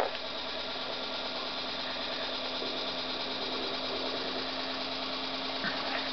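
Electric motor turning slowly on a magnet-disc shaft at under 40 RPM, fed about two amps at five volts from a bench power supply: a steady, even mechanical hum.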